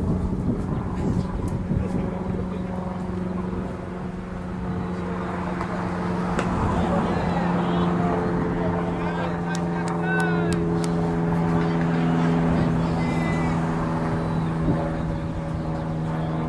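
A steady engine drone that holds its pitch, with its sound thickening about six seconds in; a few short chirps are heard around the middle.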